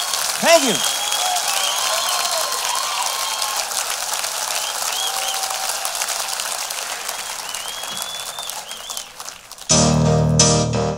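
Concert audience applauding and cheering, with whistles and one loud whoop about half a second in. The applause dies down near the end, and the band starts the next song on keyboard just before the end.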